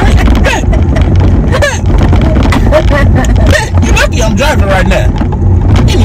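Untranscribed talking and laughing inside a car cabin, over the car's steady low rumble.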